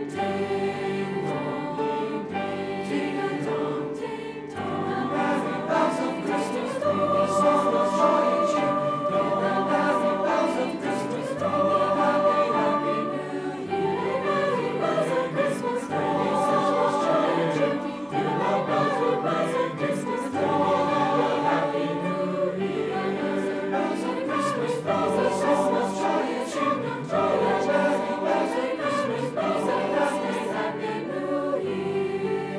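High-school mixed choir, girls' and boys' voices, singing in harmony, holding long chords that swell and change every second or two.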